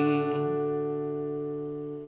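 A strummed chord on a steel-string acoustic guitar ringing out and slowly fading: the song's closing chord, let ring on beat three.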